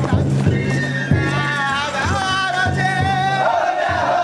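Danjiri float festival music: a steady beat of drum and gong strikes, several a second, with sustained wavering pitched voices or flute over it from the crowd hauling the float.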